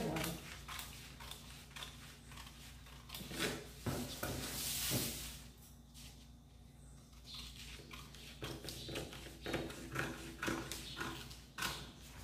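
Scissors cutting through brown pattern paper: a string of short, crisp snips, with a louder rustle of paper about four to five seconds in as the sheet is handled, and more snips near the end.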